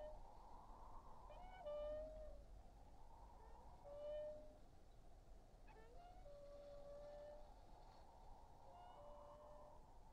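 Farm windpump turning in the wind, its head mechanism giving a faint, regular squeak: a short rising squeal that settles into a held tone, about four times, once every two seconds or so.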